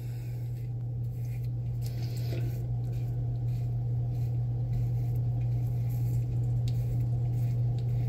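Cartridge razor scraping through shaving cream and stubble on the sideburn and cheek in short irregular strokes, over a steady low hum.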